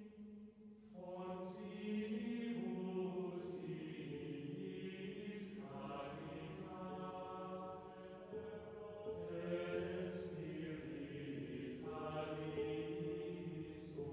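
Slow vocal music: voices singing long, held notes in a chant-like style, with the words' s-sounds audible. There is a brief drop in level about a second in.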